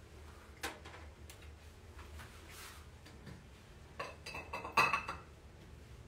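A cosmetic cream jar and its lid being handled and opened: a single tap about half a second in, then a cluster of clinks and taps about four to five seconds in, the loudest with a short ring.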